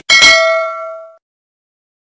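A click, then a bright bell ding from a notification-bell sound effect, ringing out and fading for about a second before stopping.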